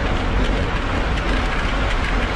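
Steady wind rush on a bike-mounted camera's microphone at about 20 mph, with the tyre roar and light rattling of a road bike rolling over cracked, rough asphalt.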